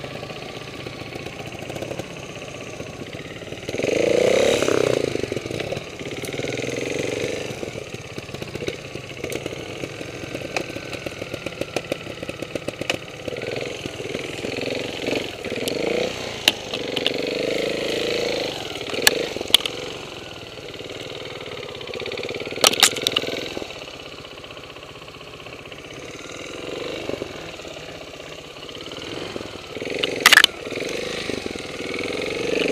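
Trials motorcycle engine running at low revs and blipped up and down in short surges, the loudest about four seconds in. Sharp knocks and clicks come here and there, a cluster of them about two thirds of the way through.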